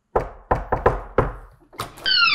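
Knocking on a front door: about half a dozen sharp raps in an uneven rhythm.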